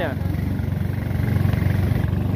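A small riverboat's motor running steadily under way, a deep drone with a rapid, even beat.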